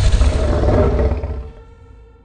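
Logo sting sound effect for an animated end card: a loud, noisy swell with a deep rumble underneath that fades away after about a second and a half, leaving a faint sustained tone.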